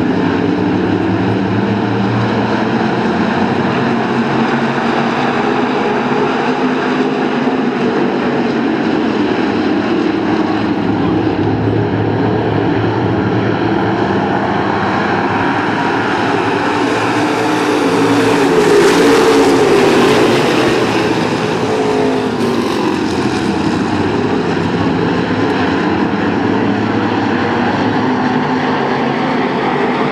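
A field of dirt-track stock cars running together, many engines going at once. A little past halfway it gets louder and the engine pitch shifts as the pack comes by close.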